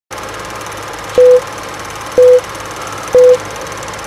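Film countdown leader sound effect: a short high beep once a second, three times, over the steady rattling whir and crackle of an old film projector.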